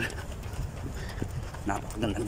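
Running footsteps of a jogger on a paved path: a run of short footfalls, over a low rumble of wind and movement on the handheld microphone.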